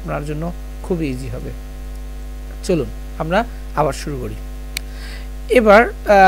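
Steady low electrical mains hum running under the recording, broken by a few short voice sounds.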